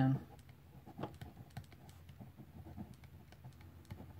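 Stylus tip tapping and scratching on a tablet screen during handwriting: a quiet run of small, irregular clicks.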